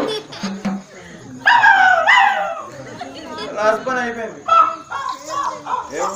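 Men's voices calling and speaking in high, exaggerated tones, loudest in a couple of strained cries about one and a half to two and a half seconds in.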